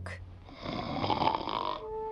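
Cartoon cat snoring: one long, breathy snore starting about half a second in and lasting just over a second, with the next snore beginning at the end.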